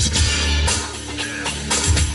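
Music with a solid kick-drum beat playing through a Subaru BRZ's stock car stereo, heard inside the cabin. The bass EQ is boosted to about level three, and the kick drum sounds punchy.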